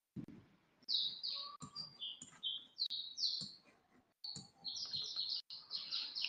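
Birds chirping: a run of short, high chirps, many sliding down in pitch, with a brief pause about four seconds in. A few faint low knocks come with them.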